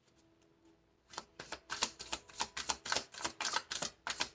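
A deck of tarot cards being shuffled by hand: a quick run of light card clicks, about five a second, starting about a second in.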